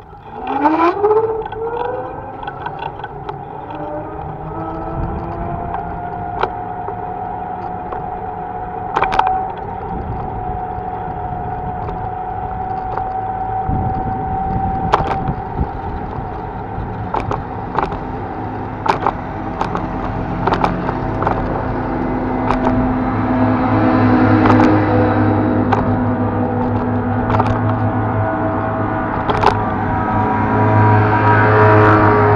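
An electric motor's whine rising in pitch over the first few seconds as the vehicle pulls away, then holding a steady pitch while it cruises. Road rumble runs underneath, with sharp knocks from bumps scattered throughout.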